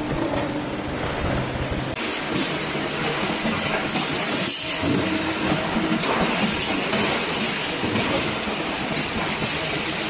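Sheet-metal factory machinery running. A steady hum comes from the press brake bending a sink panel, then about two seconds in it gives way abruptly to a louder, steady hiss from the edge- and corner-pressing machine working a sink body.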